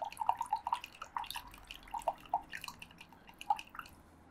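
Water being stirred in a plastic cup with a plastic pipette: small, irregular plinks and drips of liquid with light clicks.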